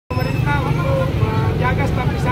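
People talking at a busy market stall over a steady low rumble.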